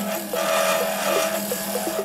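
A turning tool scraping and cutting an amboyna burl pen blank spinning on a wood lathe: a rasping cut that swells about a third of a second in and eases off near the end. It sits over background music and a steady low hum.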